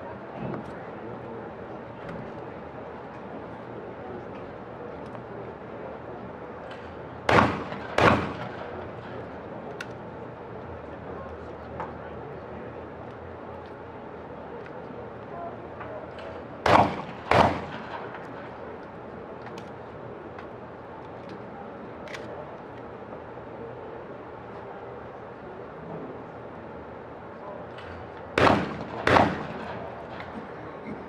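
12-gauge shotguns fired in skeet doubles: three pairs of shots, each pair well under a second apart, with a few seconds' gap between pairs.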